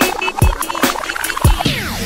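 Remixed dance music in a nonstop love-song megamix: a steady kick-drum beat, with a falling swept-pitch effect near the end.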